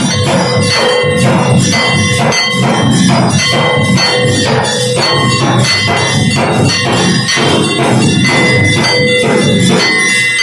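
Brass hand bell rung continuously in aarti worship, its ringing held over a steady, fast beat of temple percussion.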